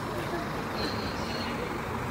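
Steady traffic noise of vehicles running, with indistinct voices of a crowd mixed in.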